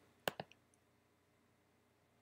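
Two quick, sharp clicks of a computer mouse button about a quarter second in, a tenth of a second apart, as a toolbar button is clicked.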